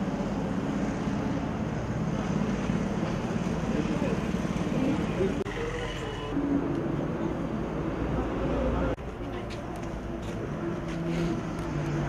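Indistinct voices of several people talking over a steady low outdoor rumble; the background drops abruptly about nine seconds in and continues more faintly.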